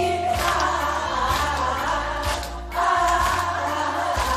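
A woman singing into a microphone over loud amplified backing music, with a crowd singing along.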